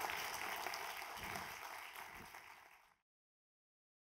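Audience applause, fading away, then cut off to total silence about three seconds in.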